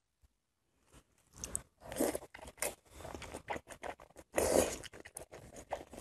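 Close-miked eating of wide flat noodles: a string of short wet mouth sounds as they are sucked in and chewed, starting about a second in, with a louder, longer one about four and a half seconds in.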